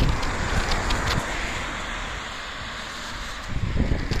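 A car going by on the road: a rushing tyre noise that fades away over about three seconds. Low bumps from the phone being handled come back near the end.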